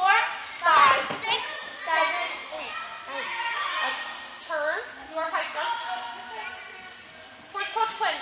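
Young children's voices chattering and calling out over one another, with no clear words, loudest in the first second or so and again near the end.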